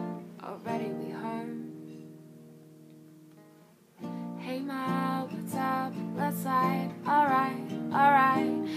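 Acoustic guitar: a strummed chord rings out and fades away over about three seconds. About four seconds in, strumming starts again with a woman singing over it.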